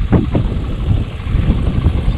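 Loud, uneven low rumble of wind buffeting the camera microphone, with a few short sounds in the first half-second.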